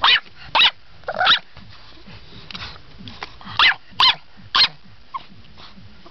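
English Bulldog puppy barking: six short barks in two groups of three, the first group right at the start and the second about three and a half seconds in.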